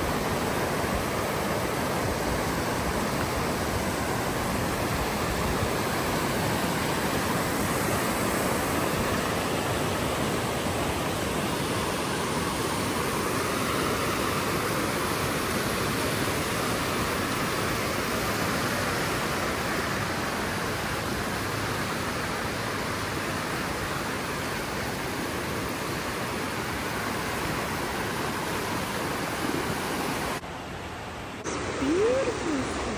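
Fast whitewater creek rushing through a rocky canyon: a steady, full roar of water, easing slightly past the middle.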